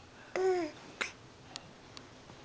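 A baby's short babbling sound, one brief 'ah' that falls slightly in pitch, followed by a sharp click and then a fainter one.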